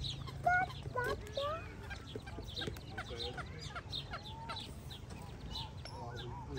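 A flock of waterfowl calling: many short, overlapping calls and chirps, denser in the first second and a half.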